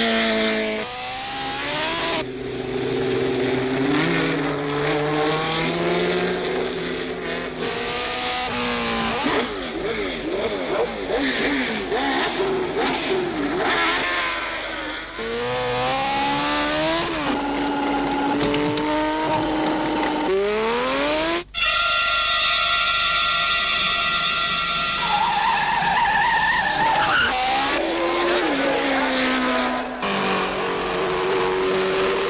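Open-wheel single-seater race car engines running at high revs, the note climbing and falling as the cars pass and shift gear. It cuts off sharply about two-thirds of the way through, then comes back as a steadier, higher engine note.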